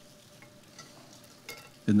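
Faint rustling with a few light clicks as a white cloth cover on the communion table is lifted and folded back. A man's voice starts just at the end.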